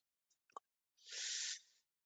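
A faint click, then a short breath into the microphone lasting well under a second, about a second in, as the trainer draws breath before speaking again.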